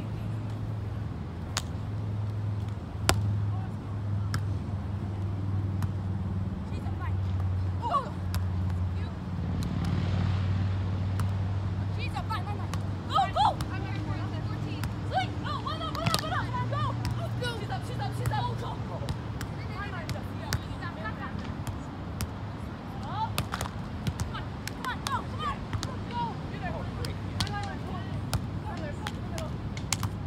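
Scattered distant voices and calls with sharp knocks and clicks throughout, over a low steady hum.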